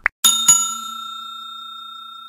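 A quick double click, then a bell sound effect struck twice in quick succession that rings on and slowly fades: the click-and-ding of a subscribe animation with its notification bell.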